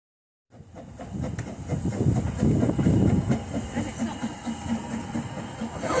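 Ffestiniog Railway Fairlie double-engined narrow-gauge steam locomotive running slowly along the platform with its train, coming toward the listener. The sound starts abruptly about half a second in and holds as a steady pulsing rumble.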